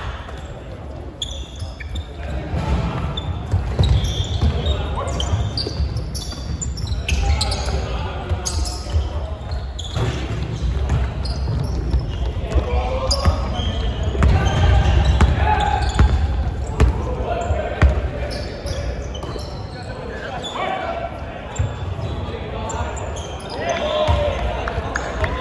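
Basketball game play in a large, echoing sports hall: the ball bouncing on the wooden court with sharp knocks here and there, short high squeaks of sneakers, and players' voices calling out.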